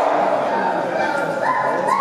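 Chimpanzees calling loudly, several pitched hoots and cries overlapping, with one call rising in pitch and held high about one and a half seconds in.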